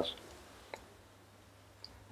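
A pause in a man's speech: the end of his last word dies away at the start, leaving a quiet steady low hum. A single faint click comes about three quarters of a second in, and another tiny click near the end.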